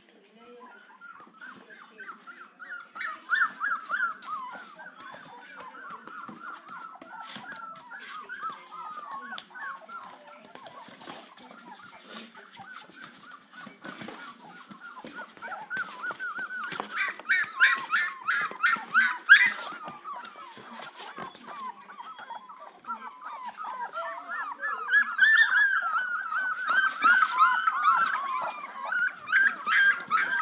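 Greyhound puppies whimpering and squealing: a near-continuous run of short, high-pitched squeaks from several pups at once. It grows louder a few seconds in, again in the middle, and through the last few seconds, with scattered clicks among it.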